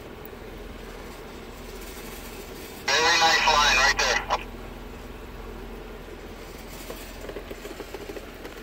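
Jeep Wrangler engine running steadily at low speed, heard as a low hum inside the cab while it crawls down steep rock. About three seconds in, a voice comes over a two-way radio for about a second and a half, sounding thin.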